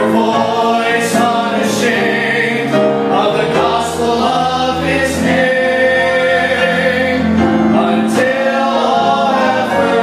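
A group of teenage boys singing a gospel song together, holding long notes.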